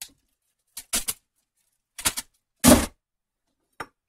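A handful of short, separate knocks of a kitchen knife on a wooden cutting board as baby carrots are handled and sliced, with dead silence between them.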